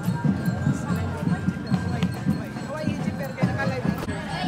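Street parade sound: a steady low drumbeat, about four beats a second, under the voices of marchers and onlookers.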